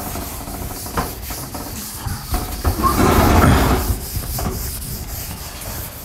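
A chalkboard being wiped with a cloth in uneven scrubbing strokes, loudest about three seconds in.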